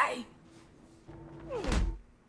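A heavy, deep thud near the end, with a short falling voice-like sound over it.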